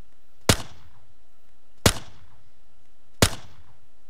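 A recorded pistol-shot sound effect, a USP shot from a video-game sound pack, sounds three times about a second and a half apart as the edit preview loops. Each is a sharp crack with a short fading tail.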